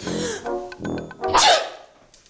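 A woman sneezing: a breathy intake at the start, then one loud sneeze about one and a half seconds in, over light background music.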